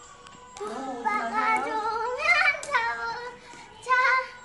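A young girl singing with music: a few sung notes that begin shortly after the start, with one rising note about two seconds in.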